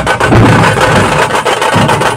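Live drumming for a Yakshagana street performance: a fast, dense run of loud drum strokes, with a steady higher tone held over them.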